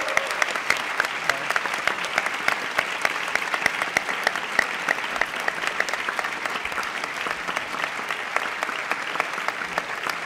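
Audience applause in a lecture hall: many people clapping steadily.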